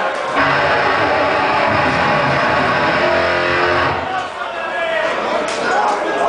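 A death metal band's distorted electric guitars and bass hold a loud sustained chord that starts just after the beginning and cuts off after about three and a half seconds. Shouting voices follow.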